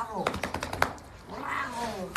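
A cat meowing twice, each meow rising and falling in pitch, with a quick run of sharp clicks or taps between the two calls.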